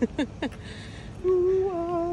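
A short laugh, then a person humming one long, fairly steady note that starts a little over a second in.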